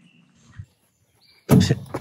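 A sudden loud thump about one and a half seconds in, a person knocking into something hard and hurting himself.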